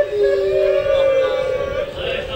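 Men's voices chanting in long held notes through a microphone, two pitches overlapping briefly early on.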